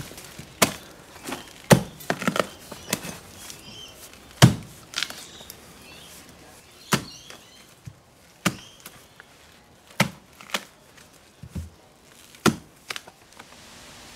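Mattock chopping into soil and the cut cycad stump and roots: about a dozen sharp strikes, irregularly spaced one to two seconds apart.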